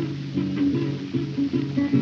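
Acoustic blues guitar playing a short picked fill between sung lines of a country-blues song.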